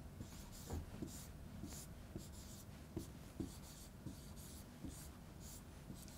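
Chalk writing on a chalkboard: a faint run of short scratching strokes with light taps as letters and brackets are drawn.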